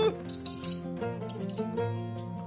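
Rosy-faced lovebird giving sharp, high chirps in two quick clusters, about half a second in and again around a second and a half, over steady background music.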